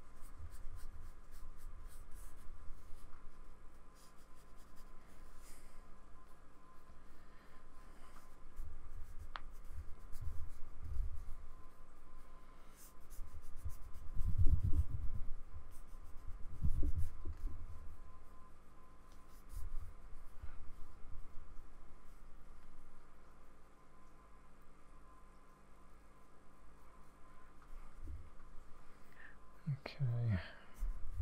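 Paintbrush working acrylic paint onto a sketchbook page: an uneven rubbing of bristles on paper with soft dull knocks against the pad, coming in waves and heaviest a little past the middle.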